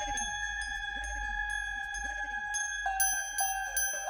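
Crotales struck with mallets, their bright bell tones ringing on at several pitches over a recorded electronic backing track with a low hum and a few swooping lower tones. From about three seconds in, a quicker run of crotale strikes.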